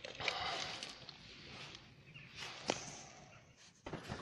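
Rustling handling noise as the person filming moves about over the test leads and clamp meter, with one sharp click about two and a half seconds in.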